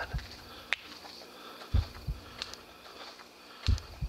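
Slow, heavy footsteps: a low thud followed by a softer one, repeating about every two seconds, with a single sharp click under a second in.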